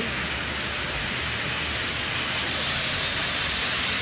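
Steady hiss of car traffic on a wet, slushy street, tyres on the wet road over a low engine rumble, growing slightly louder about halfway through.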